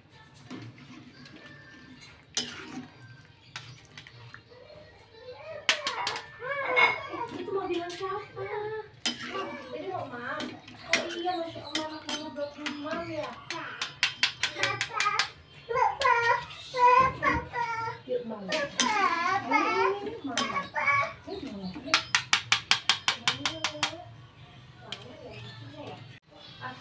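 Children's voices talking and playing in the background, with runs of quick repeated voice sounds. Light clinks of a metal perforated skimmer against a wok, loudest in the quieter first few seconds.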